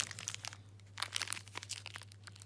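Clear plastic parts bags crinkling as they are handled: a run of small rustles and sharp clicks, busiest around the middle.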